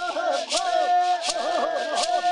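Bororo ritual chant: several voices singing together, with women's voices joining and one voice holding a long steady note. A rattle is shaken twice.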